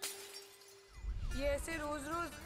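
A sudden crash of shattering glass that fades out, heard from a film trailer's soundtrack playing in the room. It is followed by a low rumble and a man's voice.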